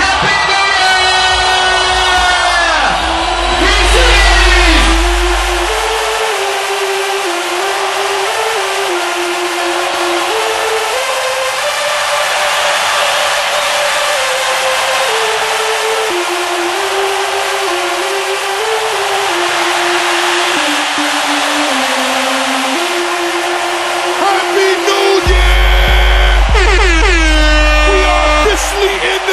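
Loud club music in a nightclub: a stepping synth melody, with heavy bass that drops out about six seconds in and comes back near the end. Siren-like DJ effects sweep up and down in pitch at the start and again near the end.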